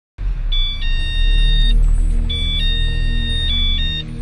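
Mobile phone ringtone: a short electronic tune of high stepped notes, played twice. Under it runs a steady low rumble.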